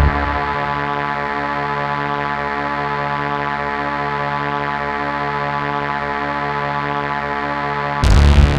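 Music: a held drone of many steady tones sounding together, even in level, with no beat or melody.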